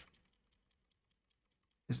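Faint, rapid, even clicking from a computer at the desk, about eight clicks a second, with one short spoken word near the end.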